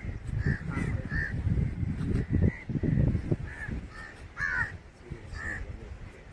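Crows cawing repeatedly in short calls, over an uneven low rumble.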